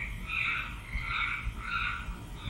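A run of short, evenly repeated animal calls, about two to three a second, each with a higher and a lower note, over a steady low hum in the recording.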